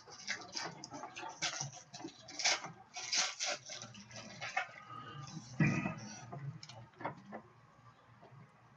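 Foil wrapper of a trading-card pack crinkling and tearing as it is ripped open by hand, a run of irregular crackles with a louder rustle about five and a half seconds in, fading near the end as the stack of cards comes out.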